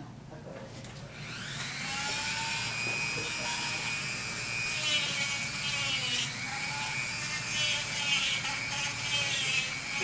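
A handheld Dremel-type rotary tool spins up with a rising whine about a second in, then runs at a steady high whine as its bit grinds into a small carved wooden seashell. It grows louder and rougher from about five seconds in as the bit bites into the wood.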